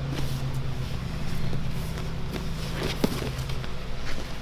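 Two grapplers scuffling and shifting their weight on a foam mat, with scattered soft knocks and one sharper thump about three seconds in, over a steady low room hum.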